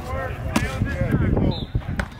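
People talking indistinctly in the background, with one sharp click about half a second in.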